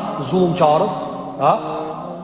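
Only speech: a man lecturing in Albanian, with a drawn-out syllable near the end.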